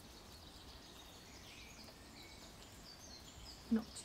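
Faint outdoor ambience: distant birds chirping now and then over a low steady rumble, a background ambience track laid under the video.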